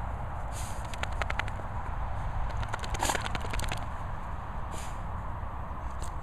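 Dalmatian digging in loose soil: bursts of paw scratching and scattering dirt about a second in and again around three seconds, over a steady low rumble.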